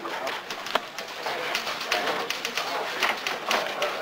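Indistinct background chatter from several people in an office, with irregular scattered clicks and clatter through it.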